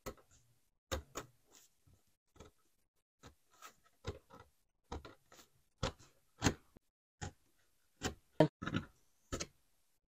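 Snap-off utility knife blade cutting through leather on a cutting mat, the deep second pass that goes all the way through: an uneven run of short clicks and scrapes, about two a second.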